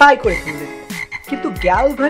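Frog croaking, used as a sound effect for a clay frog; it starts suddenly with a falling pitch, and more croaks come near the end.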